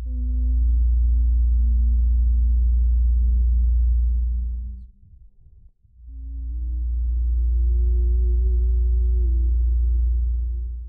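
Film sound design: a deep low drone that swells up and fades twice, each swell about five seconds long. Faint sustained tones sit above it, stepping down in pitch through the first swell and rising through the second.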